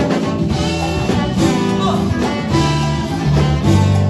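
Live funk band playing a horn passage: trumpet, trombone and saxophone over keyboard, bass, guitar and drums, with no singing.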